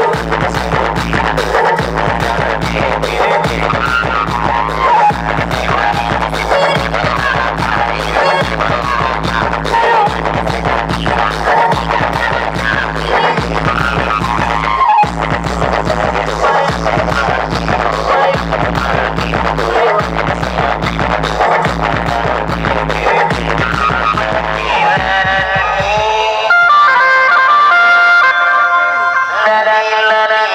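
Loud DJ dance music from a large outdoor loudspeaker stack: a heavy bass beat with a singing voice over it. About four seconds before the end the bass drops out and a bright held melody carries on alone.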